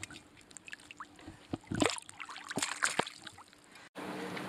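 Scattered small splashes and drips of water from a netted kokanee salmon and the wet landing net at the lake surface, a few sharp ones standing out midway.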